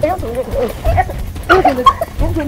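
Men crying out in short, wavering, strained cries while wrestling on the ground.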